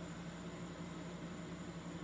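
Room tone: a steady low hum under an even hiss, with nothing starting or stopping.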